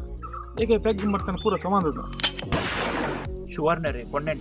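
Men's conversational speech, with a short burst of hiss a little past halfway through.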